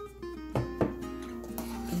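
Background acoustic guitar music with plucked notes. Two short clinks cut through about half a second in and just after.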